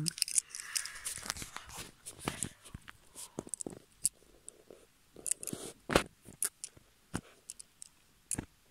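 Small plastic toy being handled: a scattering of irregular light clicks and taps with faint rustling, the sharpest click about six seconds in.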